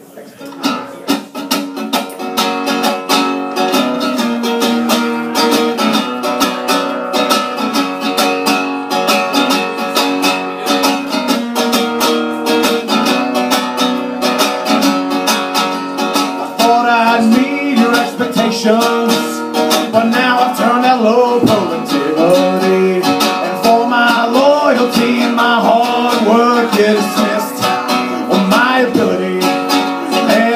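Acoustic guitar strummed steadily, playing a song's intro; a little over halfway through, a man starts singing over it.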